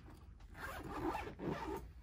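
Zipper on the top compartment of a softball roller bat bag being pulled shut in two strokes, starting about half a second in.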